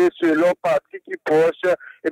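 Only speech: a person talking in short phrases with brief pauses.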